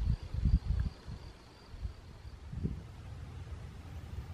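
Wind buffeting the microphone in uneven low gusts, heaviest in the first second, with a faint steady high-pitched whine above it.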